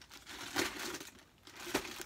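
Crackling and crinkling from the taped cardboard parcel being handled close to the microphone, with a sharp click near the end.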